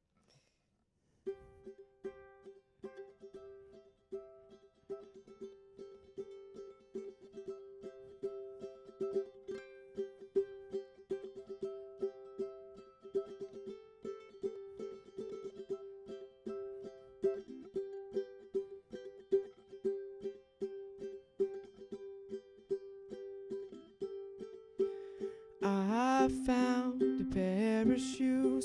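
Solo ukulele strummed in a steady rhythm, starting about a second in, as the instrumental intro to a song. A man's voice begins singing over it near the end.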